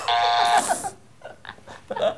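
Quiz-show wrong-answer buzzer sound effect, one steady buzz of about half a second at the start, marking the joke answer as wrong. Soft laughter follows.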